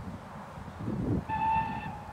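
Steam locomotive whistle from SR U Class 2-6-0 No. 31806: one short, steady toot of about half a second near the end, over wind rumbling on the microphone.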